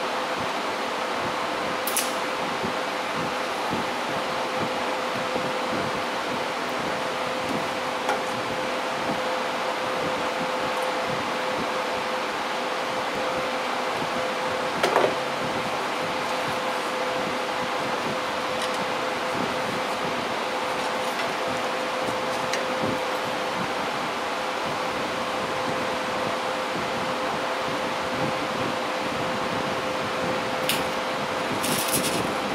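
Steady whirring of an electric fan with a faint constant tone, broken by a few light clicks and one louder knock about halfway through.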